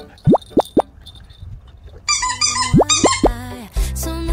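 Edited-in cartoon 'plop' sound effects over upbeat background music: three quick upward-sweeping pops in the first second, then a bouncy stepped melody with bass comes in about halfway, with three more rising pops.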